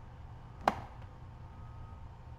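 A single sharp computer-mouse click about two-thirds of a second in, over a faint steady low hum of room tone.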